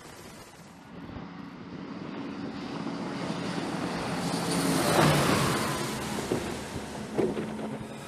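Twin turboprop engines and propellers of an E-2 Hawkeye coming in to land on an aircraft carrier's flight deck. The sound grows steadily louder, is loudest about five seconds in, then fades.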